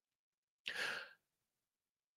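A single breath from a man close to the microphone, about half a second long, a little under a second in.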